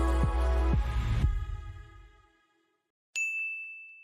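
Soft background music with a low pulse stops about a second in and dies away. After a short silence, a single bright chime rings out and slowly decays, a logo sting.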